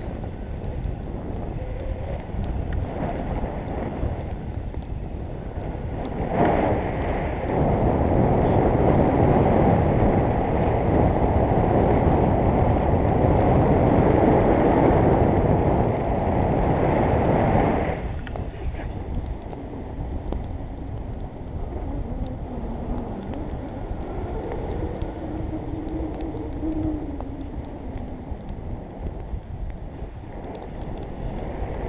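Airflow rushing over the microphone of a camera on a tandem paraglider in flight. It grows much louder about six seconds in and drops back about eighteen seconds in.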